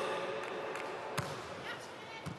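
Crowd noise in an indoor sports hall, with one sharp smack about a second in as a volleyball is struck on the serve.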